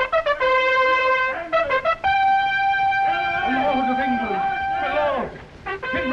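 Trumpets sounding a call: a held note, a run of short quick notes, then a higher note held for about three seconds. The call is the camp's alarm that the enemy is attacking. A laugh and other voices sound under it.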